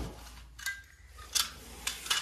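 A few light metallic clicks and clinks spread across two seconds, from the sheet-steel nest box and tools being handled. The first click rings briefly.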